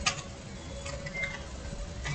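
A few faint clicks from a computer keyboard and mouse while a spreadsheet formula is edited, over quiet room tone with a thin steady hum.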